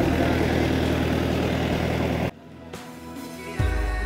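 Passenger boat's engine running steadily under wind and water noise, cut off suddenly about two seconds in. After a short quiet, background music starts near the end.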